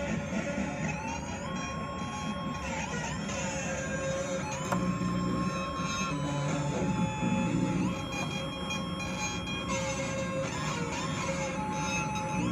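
Modular synthesizer patch playing: a phase-locked-loop voice, divided down from a frequency divider, holds a string of high, flute-like notes with quick pitch glides between them, run through a Memory Man delay over a buzzy low drone that swells about five seconds in. The sound is rough and noisy.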